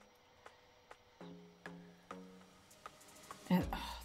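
Soft background music: a few plucked guitar notes, each held briefly, about half a second apart. A woman's voice starts near the end.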